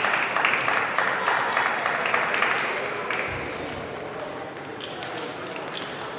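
Table tennis balls clicking off bats and tables at several tables at once, over a wash of voices and hall noise that is louder in the first half and fades about three seconds in.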